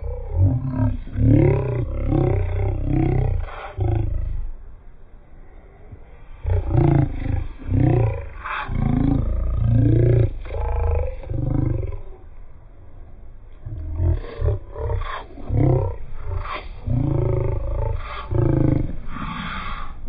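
A man's voice letting out loud, wordless roaring calls, pitch swooping up and down, in three long bouts with short breaks about five and thirteen seconds in.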